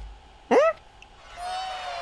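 A short, squeaky cartoon yelp that swoops up and down about half a second in, as the straw character is yanked off by a rope. From about a second and a half, a thin high note is held steadily.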